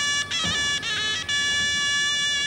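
Music: a shrill, reedy folk wind instrument plays a quick ornamented phrase, then holds one long high note from a little past halfway.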